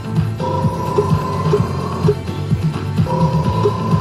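Bally video slot machine playing its electronic music and sound effects as the reels spin: a held tone sounds twice, each about a second and a half long, over quick repeating blips and a low pulse.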